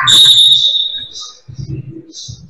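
Referee's whistle blown once, a loud high steady shrill lasting about a second.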